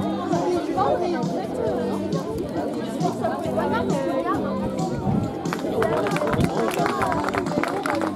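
Spectators' chatter over background music, with a run of rapid sharp taps in the last couple of seconds.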